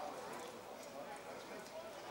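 Distant voices calling across an outdoor football pitch during play, with a few faint clicks.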